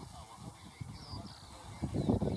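Faint honking calls, such as geese make, over an irregular low rumble.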